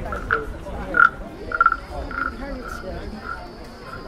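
Wooden frog rasps, the croaking frog toys that street vendors play by running a stick along the ridged back, giving a run of short croaks about two a second. The croaks grow fainter near the end.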